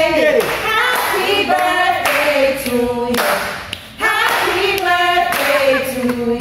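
A group of restaurant staff singing a birthday song together, with hand-clapping.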